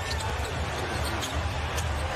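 Basketball being dribbled on a hardwood court under a steady arena crowd din, with a commentator's voice faint beneath it.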